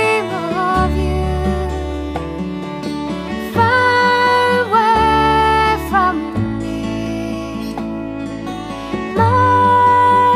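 Instrumental passage of a contemporary Celtic folk song: acoustic guitar under a melody of long held, slightly wavering notes, with no singing.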